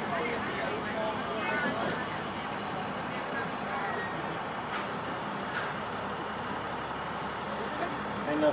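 Inside the cab of a 2006 IC CE school bus, its International DT466 turbocharged inline-six diesel runs steadily as the bus rolls slowly. There are a few short air hisses from the air brakes, and a longer one near the end.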